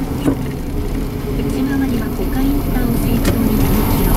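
A car driving, heard from inside the cabin: a steady low rumble of engine and road noise.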